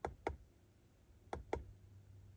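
Down-arrow button of a handheld Kingbolen YA200 OBD2 code reader clicking as it is pressed to scroll its menu: four faint clicks in two pairs, one pair near the start and one about a second and a half in.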